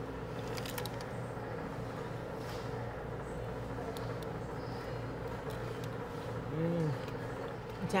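Steady low electrical-mechanical hum of the room, with a few faint clicks about half a second in. Near the end comes a short hummed "mm" from someone chewing.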